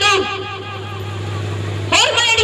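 A woman singing into a microphone through a PA system. Her phrase ends with a falling note just after the start, followed by a short pause with a steady low hum underneath, and the next phrase begins right at the end.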